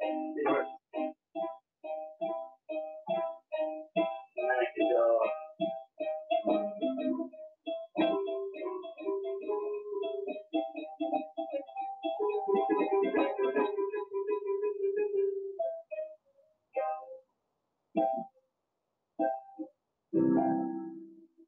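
Piano keyboard played: a quick run of short, repeated notes and chords, then longer held chords, thinning to a few separate notes near the end, as in practising major triads.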